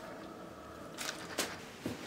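Quiet room tone with a few faint clicks, about a second in and again near the end.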